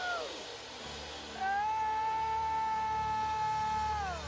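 A person's long, high wailing 'oooh' cry: a short yelp right at the start, then about a second and a half in a held note that slides up, holds steady for over two seconds and falls away at the end. Soft sustained keyboard music runs underneath.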